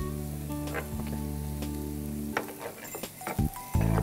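Chopped onion sizzling in hot oil in a frying pan while a wooden spatula stirs it, with a few short clicks and scrapes of the spatula against the pan. A sustained background music bed runs underneath, breaks off about two and a half seconds in and comes back near the end.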